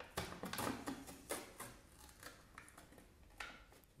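Foil peel-off seal being pulled off a Pringles can: a run of crinkling, tearing crackles over the first two seconds, then a few scattered rustles and clicks.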